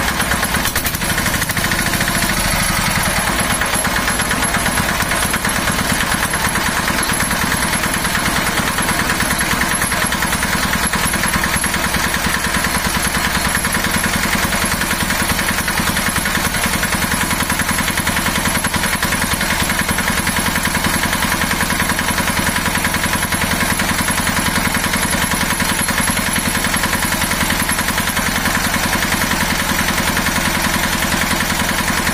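Small single-cylinder water-cooled diesel engine running steadily while driving a generator head, a continuous fast, even firing beat.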